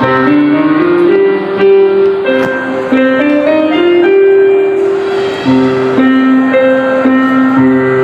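Electronic keyboard played live: a melody of long held notes stepping up and down over sustained chords, with new notes struck every second or so.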